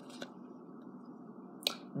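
Trading cards being handled: a faint tick about a fifth of a second in and a sharper click near the end as the next football card is drawn from the stack, over a steady low room hum.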